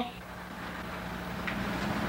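Steady low hum under a faint even hiss, growing slightly louder toward the end.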